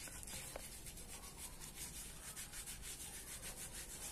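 A hand rubbing aloe vera gel into short hair and scalp close to the microphone: a faint, steady, rapid rubbing.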